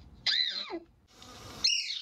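Recorded woodcreeper calls: two short, high, down-slurring notes, one about a quarter second in and one near the end, the second over a faint hiss from the recording.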